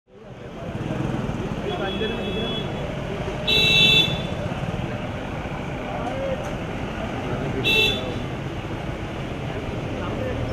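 Street traffic with vehicle horns honking over a steady traffic rumble and murmuring voices. A faint honk comes about two seconds in, a loud half-second honk about three and a half seconds in, and a shorter one near eight seconds.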